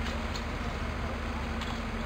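Fire engines running at a fire scene: a steady engine and pump drone with a constant low hum, under an even hiss, with a few faint ticks.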